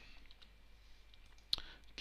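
A single computer mouse click about one and a half seconds in, over faint steady low hum.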